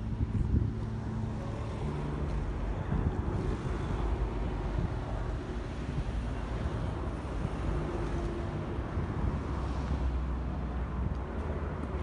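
Wind buffeting the microphone outdoors: a steady, uneven low rumble with a faint hiss above it.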